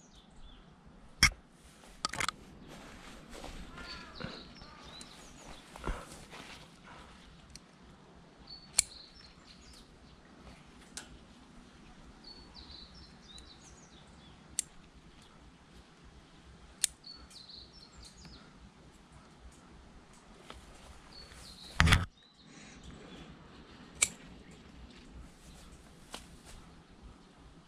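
Pruning shears snipping grapevine shoots, sharp single cuts every few seconds with a louder burst of cuts near the end. Small birds chirp in between.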